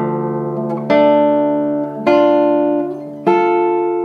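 Nylon-string classical guitar plucking two-note chords, one about every second, each left ringing into the next. These are the opening arpeggios of the piece played as block chords.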